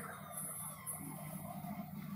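Faint siren wailing, its pitch gliding slowly, over a low steady hum.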